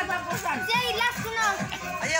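Several children's voices talking and calling out over one another, with a man's brief "oh" among them.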